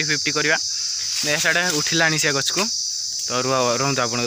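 A continuous high-pitched insect chorus, steady throughout, under a man's voice talking in short phrases.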